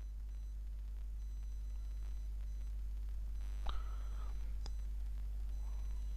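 Steady low electrical hum and faint hiss of background noise, with a thin high whine that comes and goes. A brief faint sound comes a little over halfway through, with a single tick about a second later.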